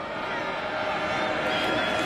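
Stadium crowd noise from the broadcast: a steady wash of many voices.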